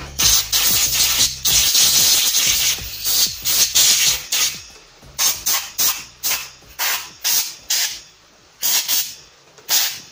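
A stiff bristle brush scrubbing an aluminium cylinder head with quick back-and-forth strokes. The strokes run almost together for the first half, then come separately at about two a second, with a short pause shortly before the end.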